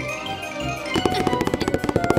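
Background music, joined about a second in by a rapid drum roll of quick, even strokes.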